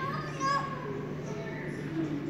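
Young children's voices, brief high-pitched babble in the first half, over a steady low hum.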